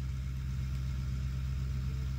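A steady low mechanical hum, even and unchanging.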